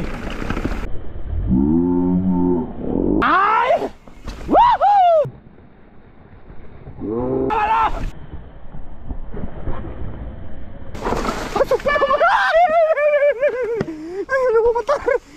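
Male riders' voices shouting during a mountain-bike descent: a long low call, then sharp rising-and-falling shouts about four seconds in and again near the middle, and talking near the end, over the rolling noise of the bike on a leaf-covered dirt trail.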